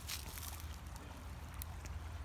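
Faint outdoor background: a steady low rumble on the phone's microphone, with a faint hiss and a few light clicks as the phone is carried through grass.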